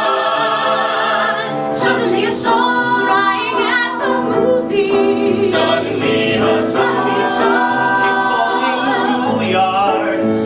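A six-voice mixed ensemble, three women and three men, singing a musical-theatre song in harmony, with held notes in vibrato.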